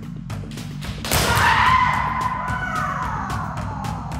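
Background music with a steady beat, and about a second in a sharp crack followed by a long, loud kendo kiai shout that falls in pitch: a shinai strike on the kote and the striker's call.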